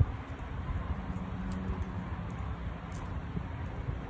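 Small garden scissors snipping dead tomato vine, a few faint clicks and rustles of stems, over a steady low rumble of background noise.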